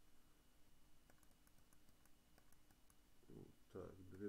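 Faint, scattered computer mouse clicks against near-silent room tone, as the hour is stepped in a desktop alarm applet's time field.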